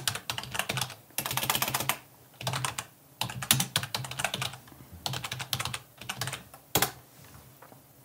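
Computer keyboard typing in quick bursts as a command is typed, then a single sharp key press about seven seconds in.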